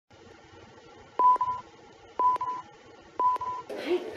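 Three short electronic beeps about a second apart, all at the same pitch, each opening with a sharp click and broken by a second click into a double pulse, over a faint hiss. A man's voice starts right at the end.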